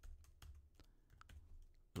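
Faint typing on a computer keyboard: a scattering of separate keystroke clicks.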